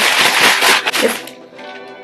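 Plastic packaging bag rustling and tearing open for about the first second. Quiet background music with held tones follows.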